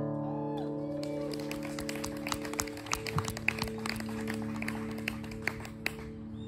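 The last acoustic guitar chord rings on and slowly fades. From about a second in, a few people clap, loosely and unevenly.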